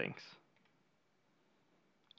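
A computer mouse button clicked once, faint and short, about half a second in, opening a menu tab; otherwise near silence after the end of a spoken word.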